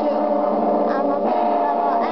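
Several steady electronic tones held together as a sustained chord, with a short vocal sound about a second in.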